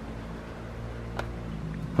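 A battery load tester's clamp clipping onto a battery terminal, a single sharp click about a second in, over a steady low mechanical hum.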